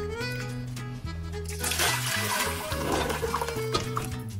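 Background music with a steady low bass line. From about one and a half seconds in, water pours from a tipped wok into a stockpot with a rushing splash for about two seconds.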